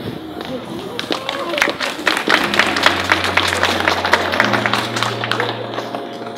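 A small crowd applauding, with some voices mixed in. About halfway through, music with long held low notes starts under the clapping.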